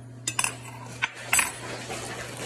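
Metal cutlery clinking and clattering: a knife being handled against kitchen items, a few sharp clicks with the loudest cluster about one and a half seconds in.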